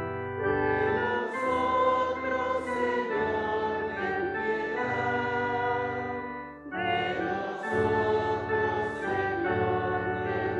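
Church singing at Mass: voices singing a slow liturgical chant with keyboard accompaniment, in long held notes, with a short break between phrases about two-thirds of the way through.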